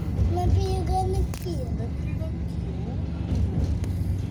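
Steady low rumble of the EKr1 Intercity+ electric train running, heard from inside the passenger car. A short voice sounds about half a second in, and a sharp click comes about a second and a half in.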